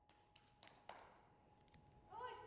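Near silence with a few faint soft taps of a horse's hooves walking on a sand arena surface, the clearest just before a second in.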